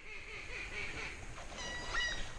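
Faint quacking over quiet swamp ambience, a thin pitched note near the end.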